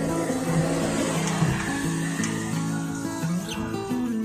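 Music with held notes playing through an old CRT television's speaker, the broadcast sound coming through a digital TV box that has just started receiving channels.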